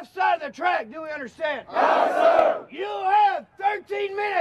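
A drill instructor shouting orders in short bursts, answered about two seconds in by a platoon of recruits yelling a reply in unison for about a second, then the single shouting voice again.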